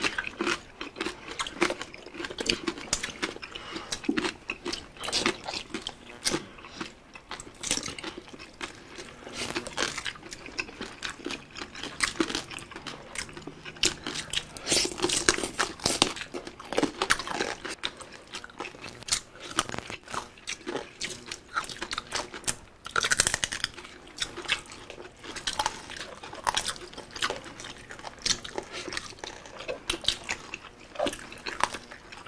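Close-up crunching and chewing of crispy deep-fried pork belly (bagnet), with dense, irregular crackling bites and wet chewing throughout.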